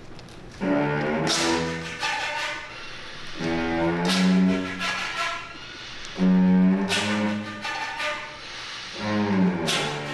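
Live contemporary chamber ensemble of strings, winds and percussion playing sustained chords that come in separate swells, several opening with a sharp struck accent. The loudest swell comes about six seconds in.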